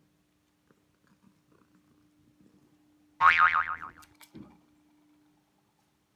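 A domestic cat gives one loud, wavering meow about three seconds in, lasting under a second. A faint steady hum runs underneath.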